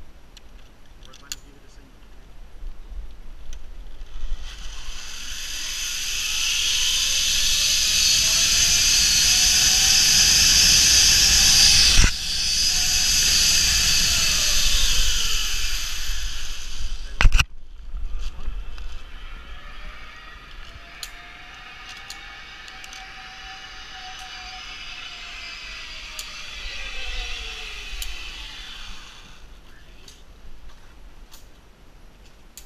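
Zip-line trolley pulleys running along a steel cable: a rushing hiss with a whine that rises in pitch as the rider picks up speed and falls as he slows. A sharp clank partway through as the trolley reaches the end of the line. Then a second, quieter whine rises and falls along the cable.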